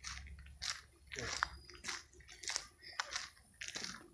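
Footsteps crunching on a gravel path at a steady walking pace, about one step every two-thirds of a second.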